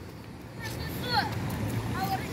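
Low rumble of a vehicle engine that grows louder about half a second in, with faint distant children's voices over it.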